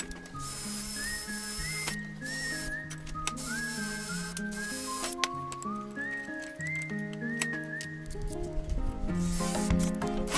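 Electronic background music: a synth melody moving in steps over a bass line, with a light beat.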